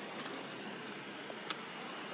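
Faint steady hum of a car cabin while driving slowly: engine and road noise heard from inside the car. One small click about one and a half seconds in.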